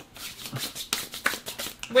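A quick run of small dry crackles and rustles from hands handling the snack and rubbing off crumbs.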